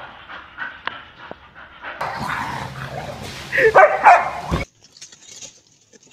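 A dog barking, the loudest barks about three and a half to four seconds in, then the sound cuts off suddenly.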